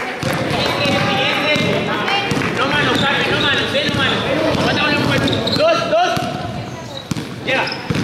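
A basketball bouncing on an indoor court during a game, under many overlapping voices of players and spectators calling out.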